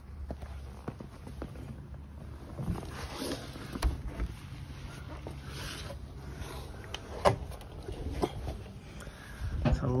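Scuffs, rustling and a few sharp knocks of a person crawling under a parked car, over a low hum, with speech starting near the end.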